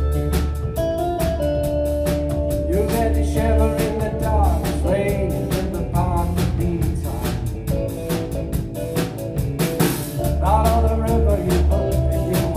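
Live rock band playing: sustained keyboard chords, a drum kit keeping a steady beat on the cymbals, and a lead melody with wavering pitch. A cymbal crash about ten seconds in.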